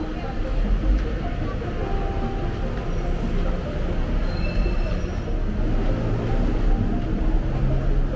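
Busy city street ambience: a steady low rumble of traffic with voices of passers-by mixed in.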